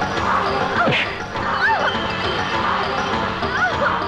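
Dramatic action-film soundtrack: busy music layered with crash and hit effects, with a sharp hit about a second in and several swooping glides in pitch.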